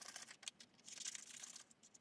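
Scissors cutting through folded paper, faint: a few short snips and the papery rustle of the blades sliding along the fold.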